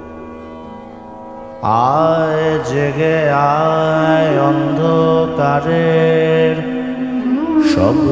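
Indian classical vocal music. A steady drone sounds alone at first. About two seconds in, a male voice enters, singing long gliding, ornamented notes over it.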